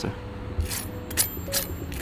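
Knife and fork cutting into deep-fried bananas, the crisp batter crackling three times about half a second apart.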